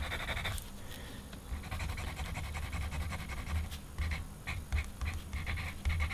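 White Edding paint marker scratching over black paper in short, irregular strokes.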